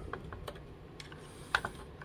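Faint, light clicks and taps of small metal RC boat rudder hardware handled by hand as a wire steering linkage is fed toward the rudder's easy connector, with one sharper click about one and a half seconds in.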